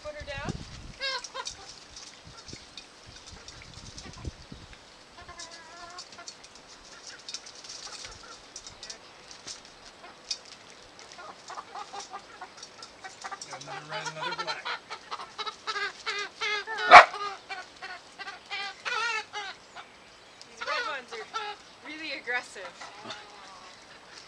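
Domestic hens clucking and squawking in bursts as they are handled, busiest through the middle stretch. One loud, sharp sound about two-thirds of the way in.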